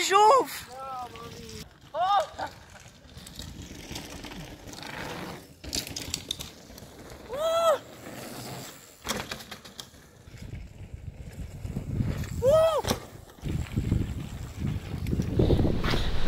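Mountain bike rolling fast down a dirt and gravel trail, a steady rushing noise that grows louder near the end. A rider gives several short whooping shouts over it, a few seconds apart.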